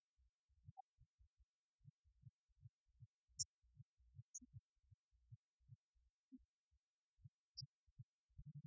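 Near silence, with faint irregular low thumps about two or three a second under a faint steady high hiss.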